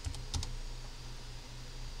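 A few quick computer keyboard keystrokes in the first half second, entering a dimension value, over a low steady hum.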